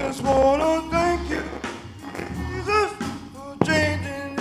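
Men's gospel vocal group singing live with band accompaniment: long, gliding vocal lines over a steady bass, with one sharp hit shortly before the end.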